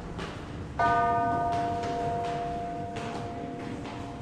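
A bell struck once about a second in, ringing on with several clear tones that slowly fade, over fainter tones still sounding from an earlier strike. Soft knocks recur at an even pace underneath.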